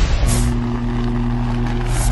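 Sound effects for an animated logo intro: a whoosh, then a steady low drone with a machine-like edge, and another whoosh near the end.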